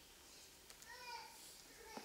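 Near silence: room tone, with a brief, faint voice about a second in.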